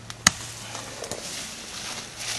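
Leafy branches rustling as they are handled and worked into a brush shelter wall, with one sharp crack about a quarter second in, the loudest sound here.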